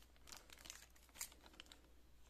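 Plastic water pouch of a Balsan fogger kit crinkling in the fingers as it is handled, a run of faint short crackles with a louder one a little past a second in.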